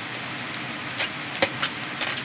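Craft supplies and a roll of clear tape handled on a table: a few short clicks and rustles about a second in and again around a second and a half, over a steady background hiss.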